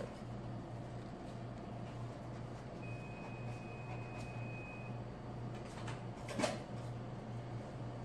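Steady low hum of room tone, with a faint high-pitched tone held for about two seconds a few seconds in and a short clatter about six and a half seconds in.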